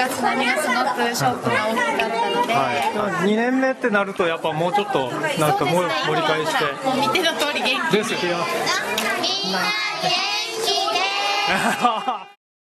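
A group of young children chattering and talking over one another, many high voices overlapping without a break.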